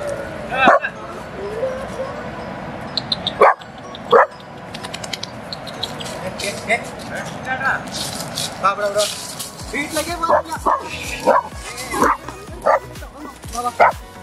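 A small dog barking a few times in the first half, then dry leaves and dirt rustling and scratching in quick strokes as it digs with its paws in the leaf litter.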